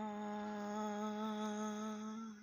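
A voice humming one long, low held note with a slight waver.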